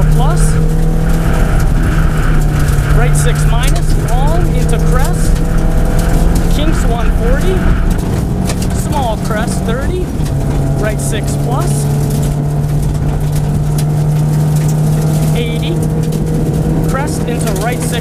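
Subaru Impreza WRX STI rally car's turbocharged flat-four engine running hard at steady high revs on gravel, with a dense hiss of tyres on loose gravel and many sharp ticks of stones hitting the car. The engine note drops away briefly about ten seconds in, then picks up again at the same steady pitch.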